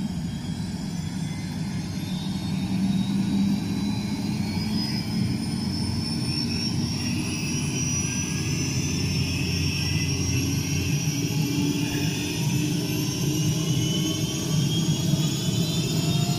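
Light two-bladed helicopter spinning up on the ground after start-up: a steady low engine drone, with a whine that rises slowly in pitch as the rotor gathers speed.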